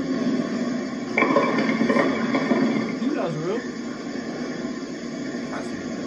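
People talking: speech, mostly from the clip being played back, with a short "thank you" at the start.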